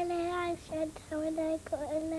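A child singing a short tune in held notes: one long note, then several shorter ones.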